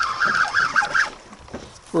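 Fishing reel being cranked to bring up a hooked fish, a short whirring for about the first second that then stops.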